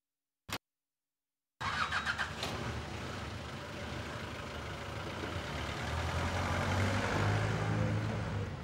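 A single click just after the start, then a Hindustan Ambassador car's engine cranking and catching about a second and a half in. It then runs and pulls away, its low hum rising near the end.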